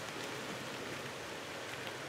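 Rain falling steadily, a faint even hiss.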